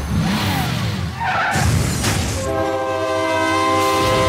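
Film soundtrack effects: a rushing, whooshing roar, then a train horn sounding a steady chord of several notes from about two and a half seconds in.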